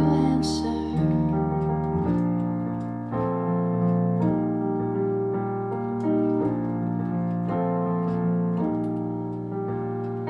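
Keyboard playing sustained chords in an instrumental break between sung lines, moving to a new chord about once a second.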